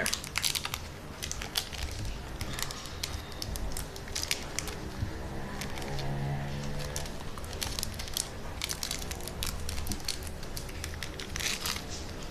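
Intermittent crinkling and rustling as sliced cheese is handled and laid into a sandwich, with faint music underneath.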